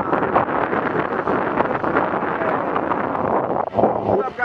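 Wind rushing and buffeting over the microphone of a camera carried on a moving bicycle, a steady noisy roar.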